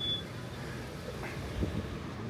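Outdoor street background noise with distant traffic. A steady high-pitched electronic beep cuts off just after the start.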